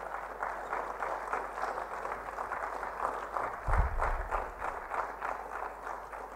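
Audience applauding: many hands clapping in a steady patter, with one low thump a little past halfway.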